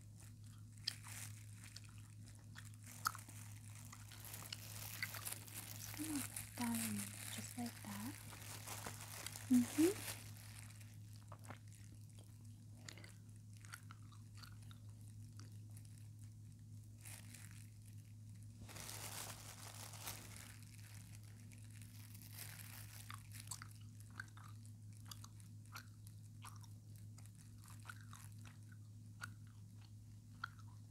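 Close-miked ASMR sounds of a mimed dental scaling: scattered soft clicks and crunches with two longer hissing scrapes, the loudest clicks about ten seconds in, over a steady low hum.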